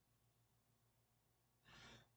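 Near silence: room tone, with a faint short intake of breath near the end, just before speech.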